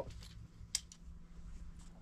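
Faint handling of small metal fishing tools at a magnet holder on a jacket's chest: one sharp click a little before the middle and a softer one near the end.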